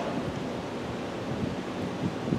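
Steady, even hiss of background room noise picked up by the microphone, with no words.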